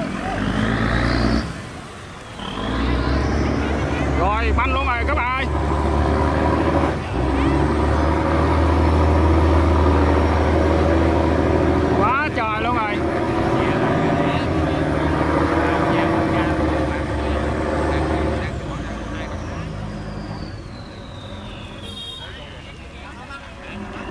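A boat's diesel engine running hard under heavy load, a deep steady drone, as the boat pushes against a fast current through a canal sluice. The drone eases off near the end. Short human shouts come twice over it.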